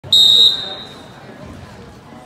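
Referee's whistle blown once to start a wrestling bout: a single short, loud, high-pitched blast of about half a second, fading quickly, followed by quieter background voices.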